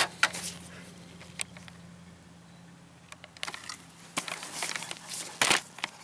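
Scattered clicks and knocks of a ratchet and metal parts being handled: a sharp click as the ratchet comes off the freshly tightened half-inch bolt on a riding mower deck's belt-tension bracket, then sparse handling clicks, the loudest near the end, over a faint steady hum.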